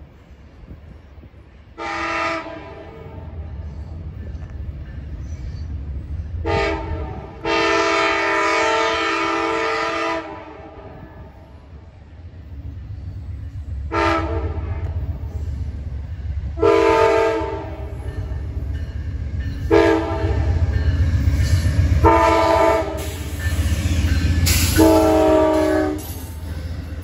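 Amtrak GE Genesis P42DC diesel locomotive sounding its chorded air horn for a grade crossing as it approaches. It gives a series of about eight blasts, mostly short, with one long blast of about three seconds. The low rumble of the engine and train grows louder as it nears.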